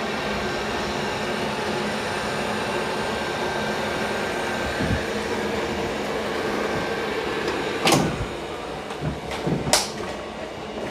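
Steady whirring hum of robot vacuum-mops and their base stations running, with a low thump about halfway through and a few sharp clicks and knocks near the end as the Roborock S8 Pro Ultra docks into its base station.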